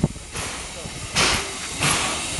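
Steam locomotive standing at idle, letting off steam in rhythmic hissing puffs, about three in two seconds, the loudest a little past a second in.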